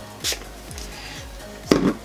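Background music, with two short spritzes from a makeup blur spray pump bottle onto a brush, about a second and a half apart, the second louder.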